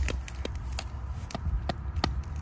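A mallet tapping an emu egg's thick shell to crack it open: about five short, sharp taps, roughly two a second.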